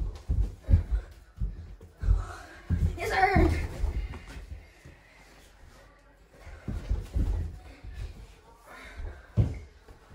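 Dull thuds of feet and a dribbled mini basketball on a carpeted floor during one-on-one play, several in quick succession at the start and more later on. A boy lets out a brief yell about three seconds in.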